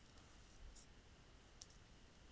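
Near silence with two faint computer keyboard keystrokes, one just under a second in and one near the end.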